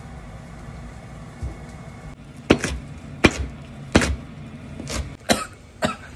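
A knife chopping on a cutting board: about six sharp, separate knocks through the second half, after a couple of seconds of quiet kitchen background.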